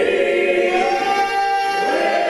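Men's choir singing a long held chord, unaccompanied.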